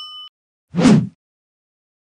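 Subscribe-button animation sound effects: a bell notification chime rings out and ends in the first moments, then a short, loud whoosh comes about a second in.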